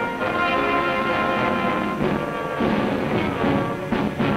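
Orchestral film-score music, sustained chords that change to a new figure about two seconds in.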